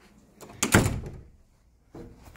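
An interior door being pushed shut, a single thud about half a second in that dies away over the next half second.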